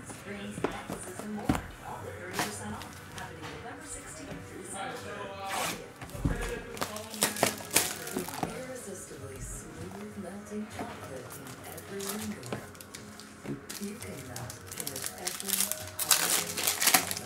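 Hands handling and opening a cardboard trading-card box, with scattered clicks, then the crinkle of a foil pack wrapper near the end, over background music.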